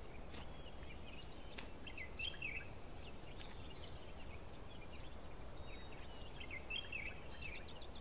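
Scattered short bird chirps over a faint, steady background rumble of forest ambience.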